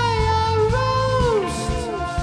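Live indie rock song: a male voice holds high sung notes that glide down from one to the next, over electric guitar, bass and a steady drum beat.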